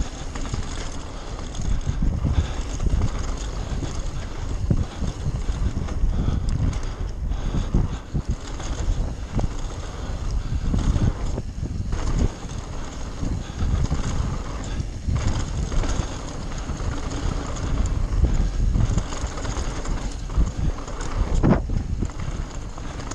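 Wind buffeting the microphone of a camera riding on a mountain bike descending a dirt trail. Gusts swell and ease throughout, with tyre noise on the dirt and short knocks as the bike goes over bumps.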